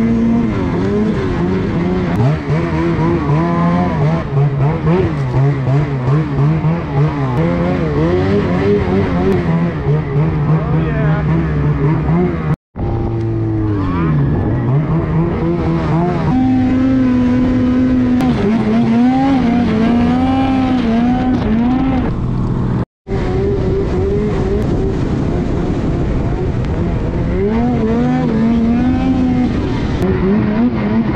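A Ski-Doo snowmobile's two-stroke engine, heard close up from the sled, revving up and down over and over as the throttle is worked through the snow. The sound cuts out briefly twice, about a third and about three quarters of the way through.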